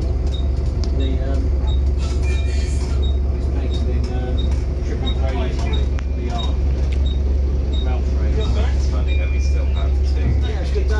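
Volvo B7TL bus's six-cylinder diesel engine idling steadily, heard from inside the saloon as a constant low hum, with a faint regular high ticking over it.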